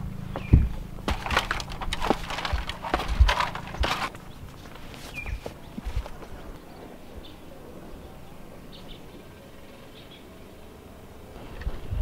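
Irregular knocks, bumps and rustles from a handheld camera being moved about while someone walks and pulls off boots and socks. They are busiest in the first few seconds, then fall to a faint background with a few small taps.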